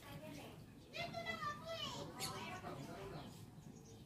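Faint background voices, like distant chatter, over low ambient noise.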